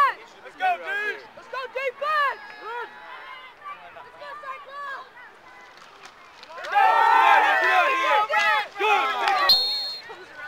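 Sideline spectators and coaches shouting and yelling at a youth football game as a play runs, swelling into loud cheering about two-thirds of the way in. Near the end a short, steady referee's whistle blast, with a knock at its start.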